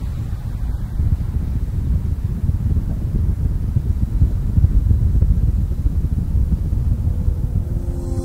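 Steady low rumble on the onboard audio of a Falcon 9 second stage while its Merlin Vacuum engine is burning.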